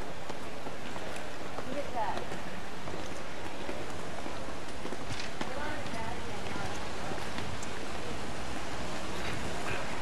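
Steady outdoor hiss of a busy city square, with faint voices of people nearby coming and going.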